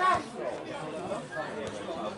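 People chatting near the microphone: a louder voice breaks off just after the start, then quieter, indistinct conversation continues.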